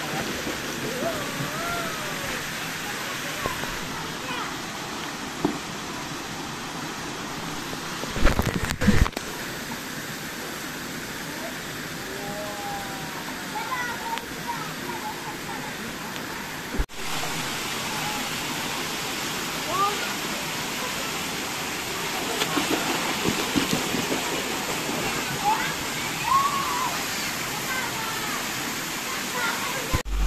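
Swimming-pool ambience: a steady rush and splash of water with children's voices in the background. A couple of loud bumps come about eight seconds in.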